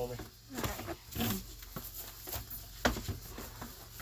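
A few short knocks and handling noises from a white plastic bucket of carrots being handled and set on a bathroom scale for weighing. The sharpest knock comes about three seconds in, and faint, brief voice sounds come in between.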